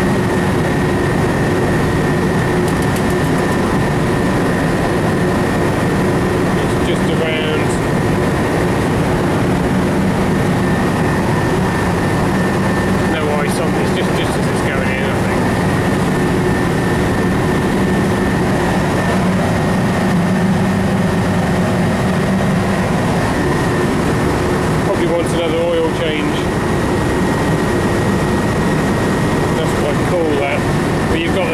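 Refrigeration condensing unit running: the 20 HP Copeland compressor and condenser fan make a loud, steady hum with a steady whine over it. The compressor is on a test run with fresh POE oil after conversion from R22 to R407C, run to see whether its oil returns to the crankcase.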